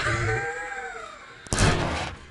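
A drawn-out vocal sound that arches and fades, then about one and a half seconds in a short burst of rushing noise as a handful of loose red dust is thrown into the camera and hits it.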